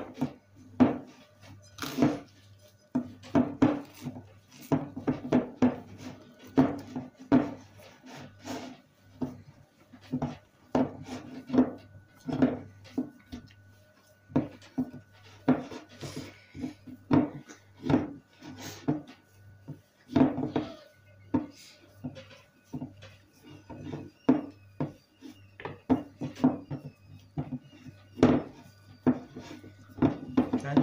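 Dough being kneaded by hand in a glass bowl: an oil-rich, sugary dough pressed and worked, giving a steady run of dull thuds and knocks, about one or two a second, with the bowl bumping on the tabletop.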